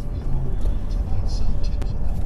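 Road and engine rumble heard from inside a moving taxi cab: a steady, heavy low rumble, with a sharp click near the end.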